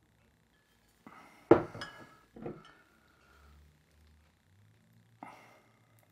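Glass soda bottles clinking as they are handled and swapped. The loudest is a sharp clink about a second and a half in, with a brief ringing after it; softer knocks follow a second later and again near the end.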